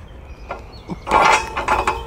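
Steel pull-up bar turning in its mount under a man's grip: a couple of light knocks, then a grating metal creak from about a second in.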